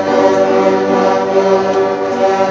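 Elementary-school string orchestra playing, violins and cello holding one sustained chord.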